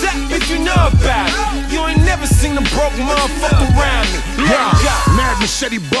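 Hip hop track: rapped vocals over a beat with a deep, sustained bass and regular kick drums.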